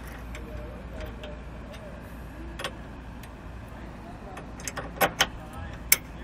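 Steel tow bar pin and its attached chain clinking as the pin is pushed through the tow bar and base plate. A few sharp metallic clicks come near the end, over a steady low rumble.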